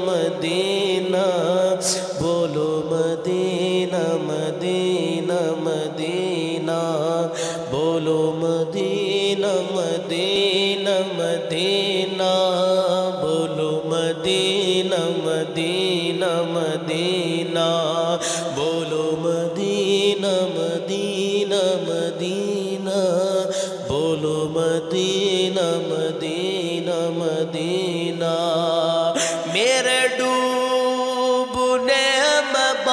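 A man singing a naat, an Urdu devotional poem, into a microphone in a slow, ornamented style with long-held, sliding notes, over a steady low drone.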